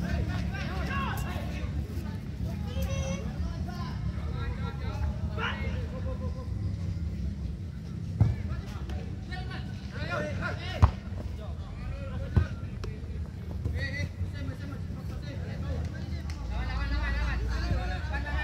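Players and spectators shouting and talking around an outdoor football pitch over a low rumble, with three short sharp thumps spread through the middle.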